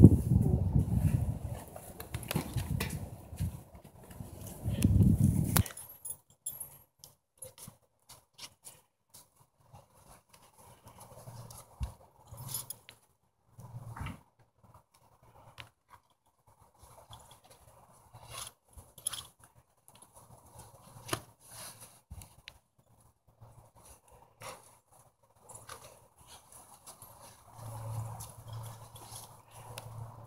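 Faint clicks, rustles and soft knocks of western saddle tack as the girth is worked and fastened under a horse, with the odd shuffle from the horse. A loud low rumble fills the first few seconds and cuts off suddenly.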